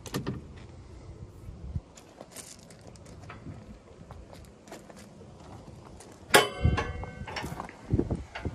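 Light rattles and knocks from the skid steer's open steel rear engine door being handled, then one loud metallic clank that rings on briefly, about six seconds in.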